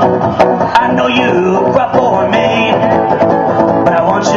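Acoustic guitar strummed in an instrumental passage of a live song, with sharp strums standing out now and then.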